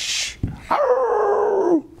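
A man imitating a Halloween sound-effects CD with his voice: a breathy whooshing hiss fades out, then one long ghostly 'ooh' howl that drops in pitch as it ends.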